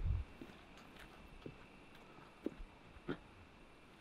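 A few faint footsteps on dry dirt, four soft steps about a second apart and unevenly spaced, over a quiet outdoor background.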